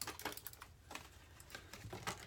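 Faint, irregular small clicks and rustles of clothing being rummaged through by hand.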